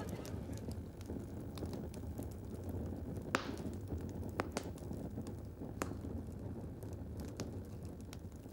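A sheet of paper burning: a steady low rumble of flame with scattered sharp crackles, the loudest a little past three seconds in.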